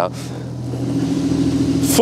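Porsche 911 race car's flat-six engine idling, a steady low hum that grows slightly louder.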